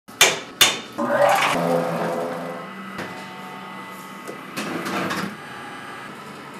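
Eggs cracked against the rim of a stainless steel mixing bowl: two sharp taps in the first second, then the bowl ringing and fading. A softer crackle follows about five seconds in.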